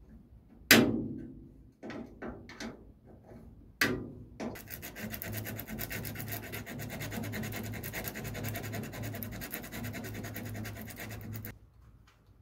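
A sharp knock that rings out briefly, a second knock a few seconds later, then about seven seconds of steady, rapid scraping against a hard surface that stops suddenly near the end.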